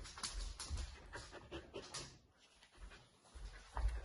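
A vizsla panting in quick, even breaths that ease off in the middle and pick up again near the end, with a few low bumps as it comes right up to the phone.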